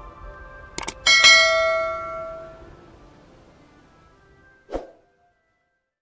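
Subscribe-button sound effect: two quick mouse clicks, then a bell chime that rings out and fades over about two seconds. A single short thump follows near the end, after which the sound stops.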